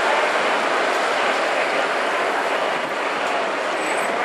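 Steady street noise at a busy city intersection: traffic passing, with no single sound standing out.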